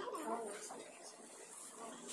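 Faint murmur of voices in the room, with a brief high, wavering whine-like sound near the start.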